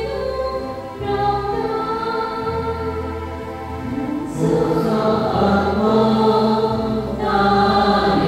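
Choir singing a slow hymn in long held notes, louder from about four seconds in.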